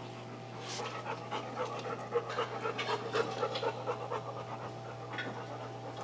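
A dog panting in quick, even breaths, a few a second, over a steady low hum.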